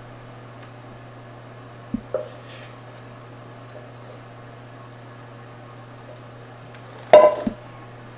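Stainless steel mixing bowl set down with a ringing metal clatter near the end, after a short knock about two seconds in, as the last batter is scraped out into an aluminium bundt pan with a wooden spoon.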